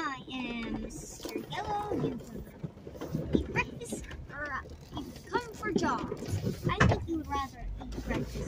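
Unclear voices and chatter inside a Jeep Wrangler's cabin, over the low rumble of its engine as it crawls a rocky trail. Frequent short knocks and rattles come from the vehicle's body and suspension working over the rough ground.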